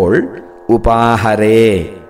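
A man chanting a Sanskrit verse in a slow, melodic recitation: a short syllable at the start, then one long held note from about a third of the way in until near the end.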